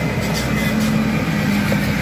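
UD Trucks concrete mixer truck passing at low speed on a dusty gravel road, its diesel engine running steadily under the noise of its tyres on loose stones.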